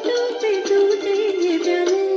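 A woman singing into a handheld microphone over an instrumental backing track, holding notes that waver slightly in pitch.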